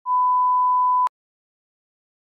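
A single electronic beep: one steady, pure tone about a second long that cuts off suddenly with a click.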